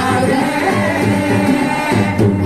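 A group of young male voices singing a qawwali together into hand-held microphones, amplified, with continuous melodic phrases and no break.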